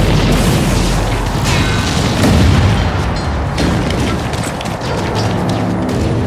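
Film battle sound: deep booming explosions and rumble mixed with a dramatic music score, the biggest blast a little over two seconds in.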